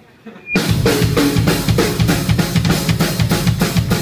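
A live rock band comes in suddenly about half a second in: a loud drum kit plays a fast, even beat, with bass drum and snare, over electric guitar.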